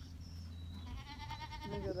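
A goat kid bleating once, starting about a second in: a single high-pitched, quavering cry lasting about a second.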